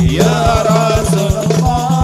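Hadroh sholawat performance: one amplified male voice slides up into a long, wavering held line of devotional song. Under it, rebana frame drums beat a steady, quick pattern.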